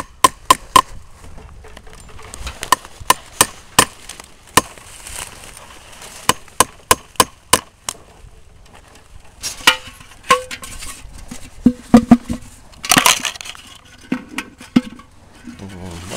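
Hammer tapping a metal sap spile into a birch trunk: a quick run of sharp strikes, then more spaced single taps. In the second half come a few scattered clanks and a scrape as the metal sap bucket is hung.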